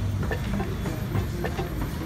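Street traffic noise: a steady low rumble from an approaching car, with a few faint ticks.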